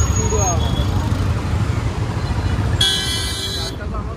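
A vehicle horn honks once, a steady blast of nearly a second, about three seconds in, over a heavy rumble of traffic and voices.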